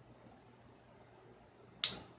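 Near silence, then one short, sharp click-like sound near the end.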